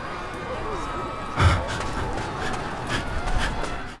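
Busy pedestrian street ambience: a steady hum of distant voices, with a short thump about a second and a half in.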